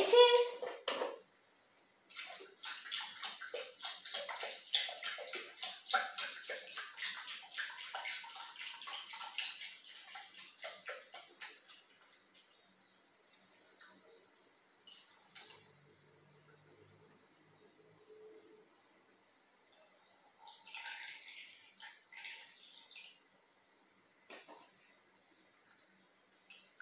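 Milk poured from a carton into a stainless steel Thermomix mixing bowl: a splashing stream for about ten seconds, then the flow eases off, with a short, weaker pour a few seconds before the end as the bowl is topped up.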